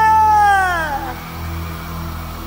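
A man's voice holding a long, high shout that falls away in pitch over about a second, over the live band's steady backing music.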